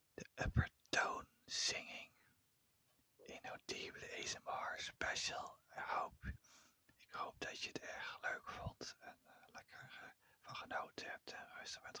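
Whispered overtone singing: breathy voiced phrases in which the mouth shape sweeps a whistle-like overtone up and down, with a short pause about two seconds in. A brief low thump comes about half a second in.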